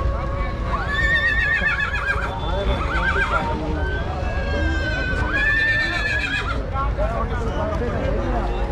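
Horse whinnying twice: a high, wavering call about a second in and a second one about five seconds in, over crowd chatter and a low rumble.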